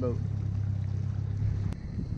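Outboard motor running steadily with a low hum as the skiff moves along, breaking off abruptly with a click near the end.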